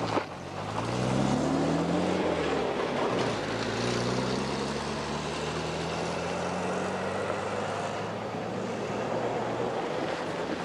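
A road vehicle's engine accelerating, its pitch rising over about two seconds, dropping back as it shifts gear, then rising again and holding steady, over a steady rush of road and wind noise. A sharp click comes right at the start.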